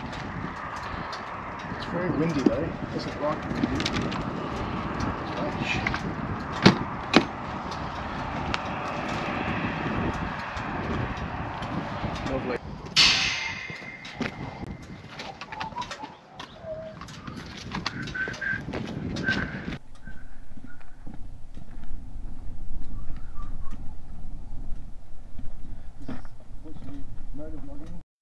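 Birds calling over a steady outdoor rushing noise, with faint voices in the background. There are two sharp clicks and a short hiss partway through, and the rushing noise drops away after about twenty seconds.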